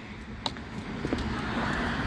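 A road vehicle approaching, its noise swelling steadily louder over the second half, with a single sharp click about half a second in.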